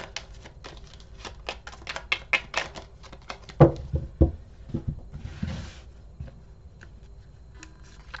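Tarot cards being shuffled by hand: a fast run of flicking clicks, then a few low thumps between about three and a half and four seconds in, a short swish just past five seconds, and scattered light clicks as the cards are laid out.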